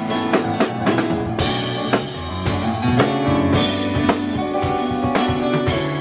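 Live instrumental passage of a piano-and-drums band: electric stage piano chords over a drum kit keeping time with cymbals and drum hits, and no singing.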